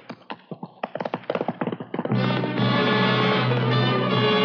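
A radio sound effect of a horse's hoofbeats galloping off, a quick run of clattering hits for about two seconds. About two seconds in, an orchestral music bridge with brass comes in on a held chord.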